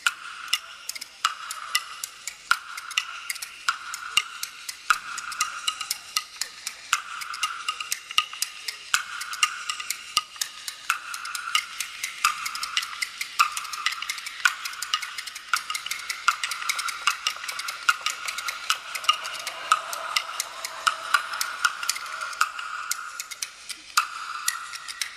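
Kuaiban bamboo clappers played solo: a large two-piece clapper and a small set of slats clacking in a fast, steady rhythm. It is the instrumental opening of a clapper-rhyme piece.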